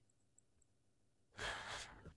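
A person's short audible sigh, an exhale close to the microphone, about a second and a half in.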